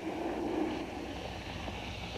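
Water from a garden hose pouring and splashing into a small lined water garden, a steady rush.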